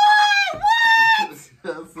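A woman's voice letting out two long, high-pitched wails, each held steady for about half a second, then a short word near the end. It is an exaggerated cry of dismay.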